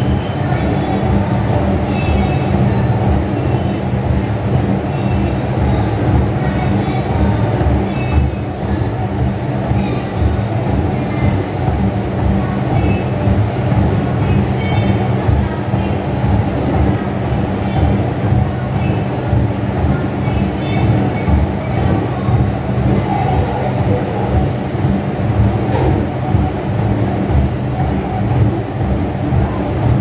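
Gym exercise machine running close to the microphone: a loud, steady mechanical rumble.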